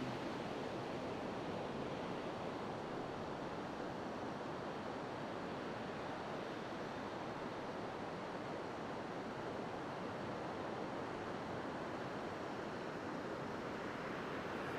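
Sea surf washing onto a sandy beach: a steady, even rush of waves with no single crash standing out.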